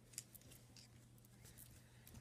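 Near silence: a few faint, brief rustles and ticks of clothing being handled, one sharper about a fifth of a second in, over a low steady hum.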